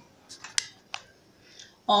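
Three short sharp clicks within the first second, the middle one the loudest, over quiet room tone.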